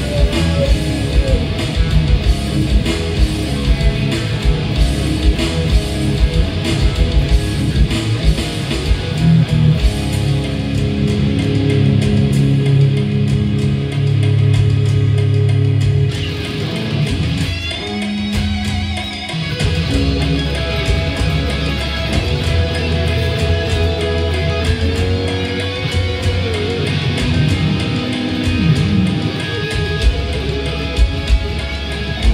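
Two SG-style electric guitars playing an instrumental passage of a Thai pop-rock song, with drums and bass behind them.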